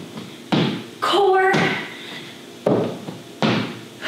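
Thuds of feet and hands hitting the floor during burpees with a jump: several sharp landings a second or so apart, with a brief bit of voice about a second in.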